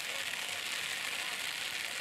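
Steady hiss of rain falling, with no distinct impacts or voices standing out.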